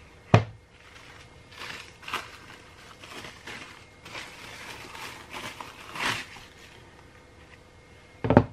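A single sharp knock just after the start, then plastic cling film crinkling and rustling in short bursts as it is peeled off a round soap mould.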